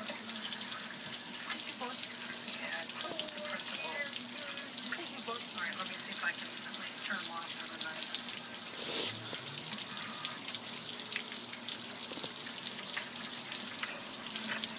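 Water from a garden hose running over a gas grill and splashing down onto concrete: a steady, even hiss of falling water.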